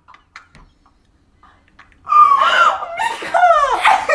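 A girl shrieking loudly in shock at her hair being cut, in long sliding cries that start about halfway through. Before that there are only a few faint clicks.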